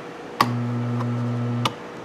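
Toggle switch clicks on a reversing switch box, then a quarter-horsepower three-phase electric motor fed only single-phase 240 V hums steadily for about a second without turning, and a second click cuts it off. The motor hums but cannot start on its own because the third phase is missing.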